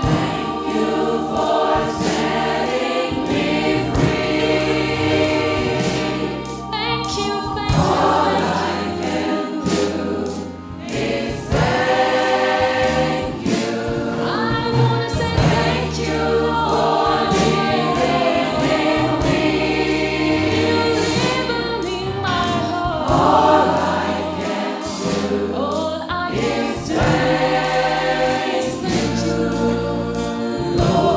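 Gospel choir singing through handheld microphones, many voices together, over a steady beat with a low bass line.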